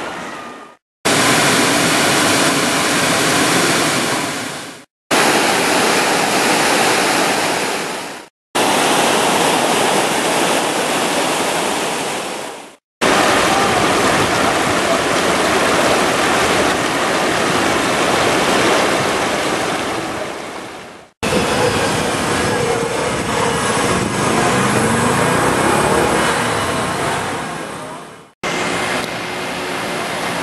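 Shallow stream water rushing and splashing over rocks and stepping stones, a steady loud rush. It comes in several separate takes, each fading out into a brief silence before the next starts abruptly.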